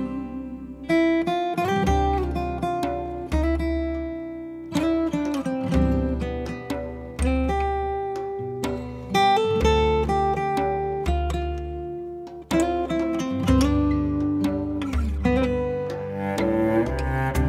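Instrumental passage of a slow ballad: acoustic guitar picking notes that ring and fade about once a second over a low bass line, with no voice.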